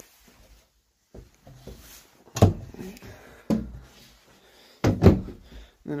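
Wooden cabinet doors knocking shut: several sharp knocks, the first about two and a half seconds in and the last two close together near the end.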